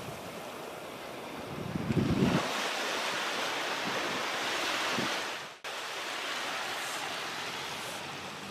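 Shallow surf washing over sand at the water's edge, a steady hiss, with wind buffeting the microphone for a moment about two seconds in. The sound drops out abruptly for an instant about five and a half seconds in, then the wash carries on.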